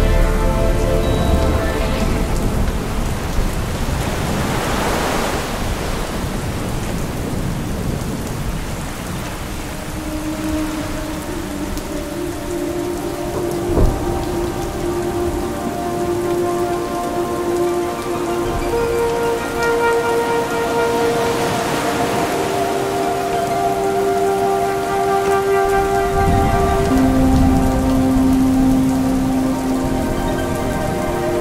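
Rain falling steadily under a synthesizer drone that holds long notes and moves slowly from chord to chord. Low thunder rumbles near the start and again near the end, and the rain's hiss swells twice.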